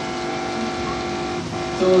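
A steady hum made of several held tones, filling a pause in speech, with a word spoken just at the end.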